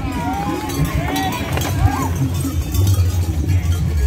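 Horses galloping past, their hooves rumbling louder near the end, while men shout and call over them.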